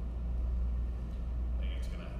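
A steady low hum of room noise in a large hall, with faint voices or movement coming in near the end.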